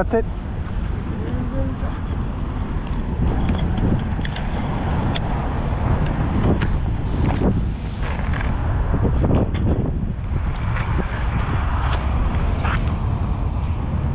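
Wind buffeting the microphone over the steady rush of passing road traffic, with a few brief knocks.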